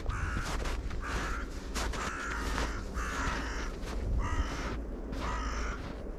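A bird calling about five times, short calls roughly a second apart, over footsteps crunching in snow and a low wind rumble on the microphone.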